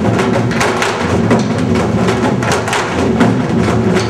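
Korean traditional drum-dance music: barrel drums on stands struck with sticks in a quick, uneven rhythm over a sustained low accompaniment.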